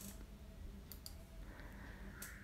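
Faint room tone with a low steady hum and a couple of small, faint clicks about a second in.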